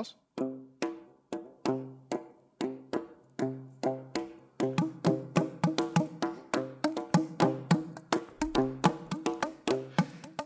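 Tube drums of PVC pipe and cardboard tube slapped with the palm on their open ends. Each stroke is a short hollow pitched pop, mixing the low covered stroke with the higher open one in a rhythm that starts sparse and grows busier about halfway through.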